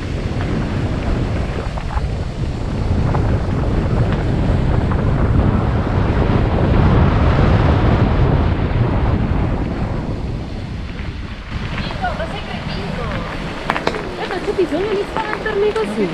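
Wind buffeting the camera microphone of a mountain bike rolling fast downhill on a rough track: a loud, steady rush that peaks midway and eases off after about ten seconds as the bike slows.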